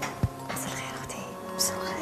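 Soft background music under quiet, whispered talk between two women, with one short thump near the start.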